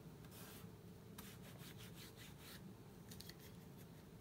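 Faint rubbing of fingertips over WD-40-wetted adhesive residue on a plastic computer case, in a run of short, irregular strokes.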